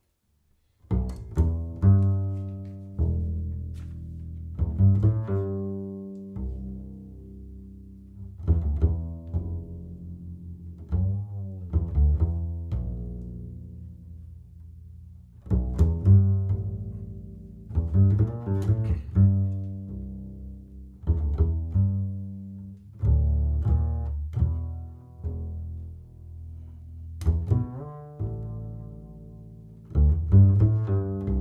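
Upright double bass played pizzicato: a slow, melodic line of plucked low notes, each ringing and then fading, beginning about a second in.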